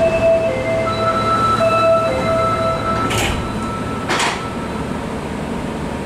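Door-closing sequence of an Osaka Metro 400 series subway car: a series of steady electronic chime tones at several pitches for about three seconds, then the doors sliding shut, with two short bursts of noise about a second apart.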